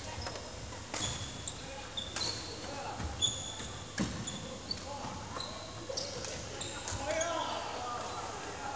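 Badminton rally: rackets striking a shuttlecock about once a second, with short high squeaks from court shoes on the wooden floor and footfalls between the hits.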